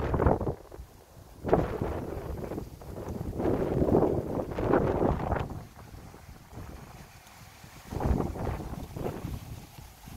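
Wind buffeting the microphone in uneven gusts, a low noise that swells and drops. It is loudest from about one and a half to five and a half seconds in, and again briefly around eight seconds in.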